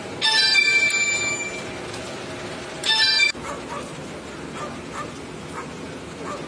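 A dog barking: two loud, high-pitched outbursts near the start and about three seconds in, then fainter barks repeating roughly twice a second.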